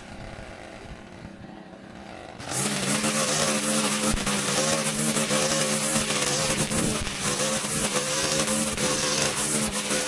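Gas string trimmer's engine dropping to a low idle, then opened back up to full throttle about two and a half seconds in and running steadily while cutting tall grass.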